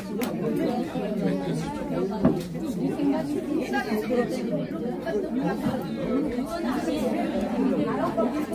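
Murmur of many people talking at once in a large room, with a single knock about two seconds in.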